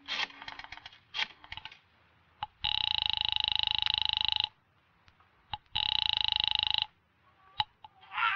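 Telephone sound effect: a quick run of rotary-dial clicks, then the line ringing twice with a fast-pulsing ring, the second ring shorter. A sharp click near the end, as the receiver is picked up.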